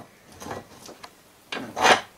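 Wooden axe handle scraping against the steel jaws of a bench vise as it is worked free, a short rubbing scrape that swells near the end after a quieter first second and a half.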